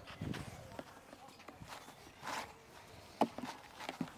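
A tennis racket striking a ball once, a single sharp pock about three seconds in, amid faint footsteps on a clay court.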